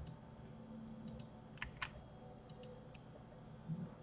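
Scattered clicks of a computer mouse and keyboard during editing: about eight sharp clicks, several in quick pairs, over a faint steady hum.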